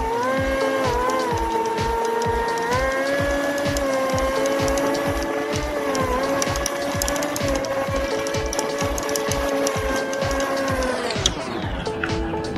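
Outboard jet motor running at a steady pitch while the boat is under way, sliding down in pitch near the end as the throttle comes back. Background music with a steady beat plays over it.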